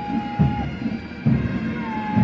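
Massed military pipes and drums playing a march: steady bagpipe drones under a held melody note that ends and a new one that starts near the end, with drum beats about once a second.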